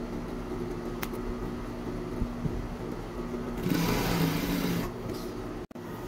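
Juki industrial sewing machine running with a steady motor hum, then stitching louder and rattlier for about a second around four seconds in as it sews the edge of a fabric strip.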